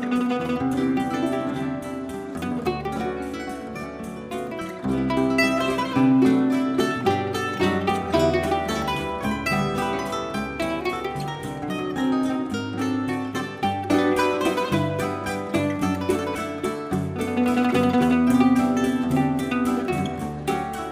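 Live choro played on plucked strings: a bandolim carries a fast, busy melody over cavaquinho and acoustic guitar accompaniment.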